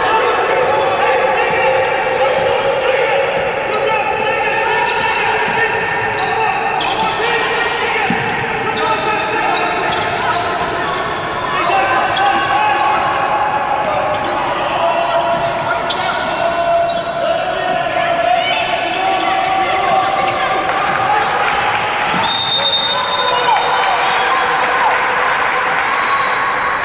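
A basketball dribbled on a hardwood court in a large echoing hall, with players and coaches calling out. A short, high referee's whistle blows near the end, stopping play for a foul.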